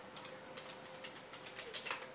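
Typing on a computer keyboard: a scatter of light key clicks, with the loudest quick run of clicks near the end, over a faint steady hum.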